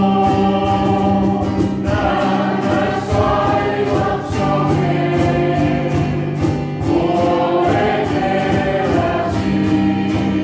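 Small mixed church choir singing a gospel song, men and women together, over accompaniment that holds low chords and keeps a steady beat.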